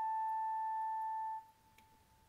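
Flute holding one steady note that stops about one and a half seconds in, followed by near silence.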